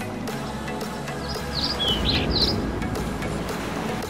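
Background music with a steady instrumental bed. In the middle of it come about five short, high chirps like birdsong.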